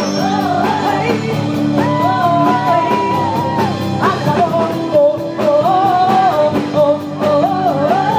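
A woman singing lead with a live band, keyboard and drums, over a steady beat. Her melody rises and falls, with some long held notes.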